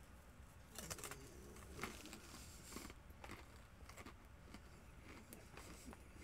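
Faint, irregular crunching of Dot's honey mustard pretzel pieces being chewed, a scattering of soft crunches every second or so.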